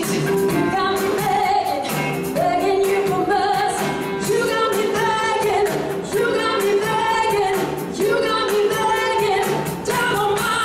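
Live band playing a beach music song: a lead vocal sung over a steady drum beat and backing instruments.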